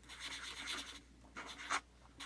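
Permanent marker writing on paper: scratchy strokes for about a second, then a shorter burst of strokes near the end.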